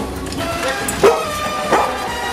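A dog barking twice, short and sharp, about a second in and again near the end, over pop music playing throughout.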